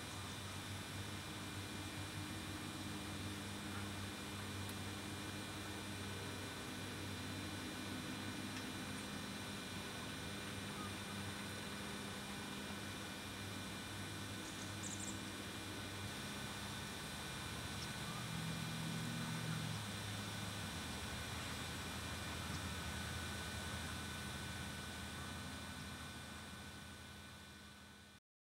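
A low steady hum with a haze of hiss. Its low tones shift about two-thirds of the way through, and it fades away near the end.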